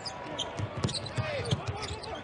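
A basketball being dribbled on a hardwood court, about four bounces in the second half, with short sneaker squeaks among them.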